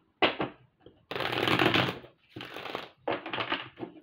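A tarot deck being shuffled by hand: a sharp card slap about a quarter second in, then a shuffling burst of about a second and two shorter bursts after it.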